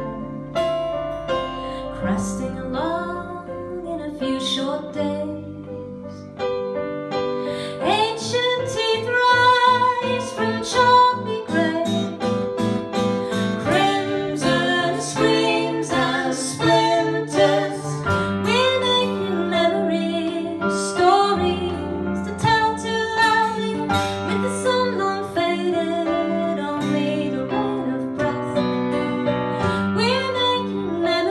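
A duo performing a song live: instrumental accompaniment with singing, which grows fuller and louder about six seconds in.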